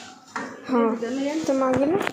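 Metal puja plates and bowls clinking a few times as they are set down and moved, with a person's voice over them in the second half.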